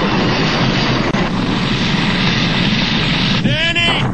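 Loud, steady rushing noise of a nuclear blast wave sweeping through a town, a film sound effect, with a short rising whine near the end.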